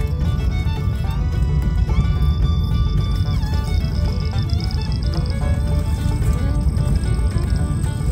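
Music with held, stepping notes plays over the steady low rumble of a car driving on a rough dirt road, heard from inside the cabin.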